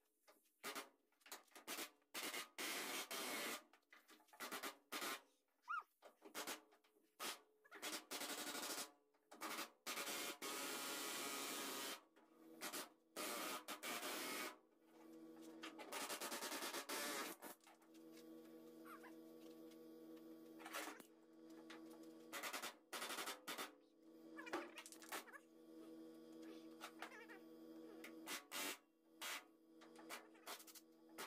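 Pneumatic air hammer run in repeated bursts, some short and some held for two or three seconds, hammering a sheet-metal panel edge down. A steady hum of several pitches comes in about halfway and runs under the bursts.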